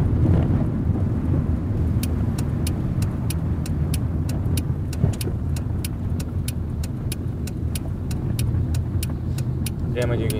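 Steady engine and road rumble inside a car's cabin as it turns at a junction. From about two seconds in, a turn-signal indicator ticks evenly at about three ticks a second. There is one short knock about halfway through.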